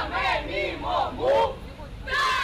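A group of young voices shouting short cries together, about five in quick succession, the loudest one near the end.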